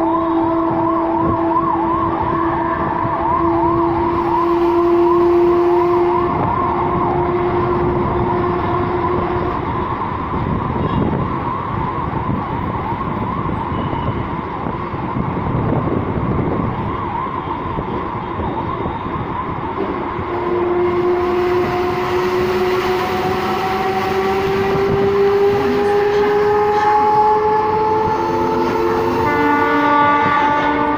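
Mumbai suburban electric local train running, heard from on board, with a steady electric whine that rises slowly in pitch through the second half. For the first several seconds a fast warbling, siren-like tone sounds over it. A short horn-like sound comes right at the end.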